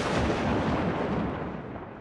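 A loud, rumbling boom sound effect that fades steadily.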